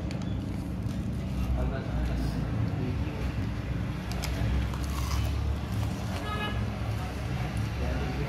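Crispy battered fried chicken wings being bitten and chewed, with a few sharp crunches, over a steady low background rumble.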